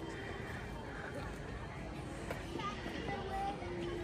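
Quiet outdoor background with faint distant voices, a few short snatches in the second half; no close sound stands out.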